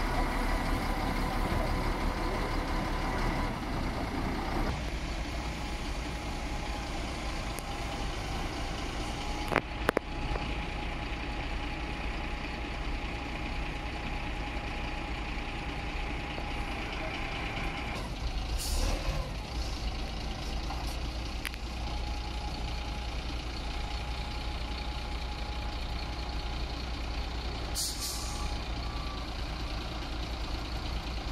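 Wheel loader's diesel engine running steadily at a concrete batching plant. A sharp knock comes about ten seconds in, and short air-like hisses come a little before twenty seconds and again near the end.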